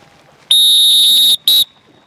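A coach's whistle blown as the start signal for the runners: one long, high, shrill blast of nearly a second, then a short second blast.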